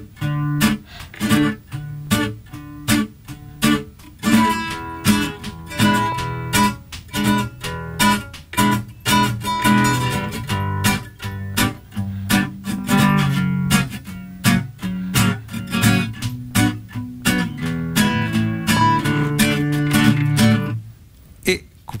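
Nylon-string classical guitar played in a bass-and-strum accompaniment, single bass notes alternating with down-and-up strums, through a verse progression of D, E7, G, F#, Bm, E7, A7 and back to D. The playing stops about a second before the end.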